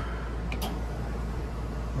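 Newly installed gas furnace running in heating mode: a steady low hum with air noise, and a brief tick about half a second in.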